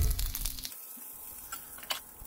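Bacon rashers sizzling in a cast-iron skillet, fading out about half a second in, leaving quiet with a single click near the end.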